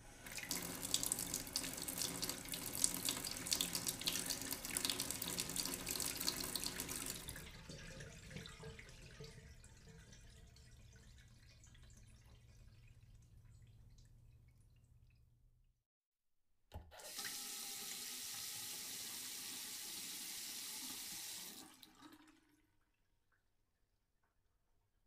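Water running from a tap into a container already holding water. The splashing is loud for about seven seconds, then fades and cuts off. After a short silence and a click, it returns loud and steady for about five seconds, then stops abruptly.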